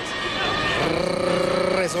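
A man's voice holding one long drawn-out vowel at a steady pitch, starting about half a second in and ending near the end, over arena background noise.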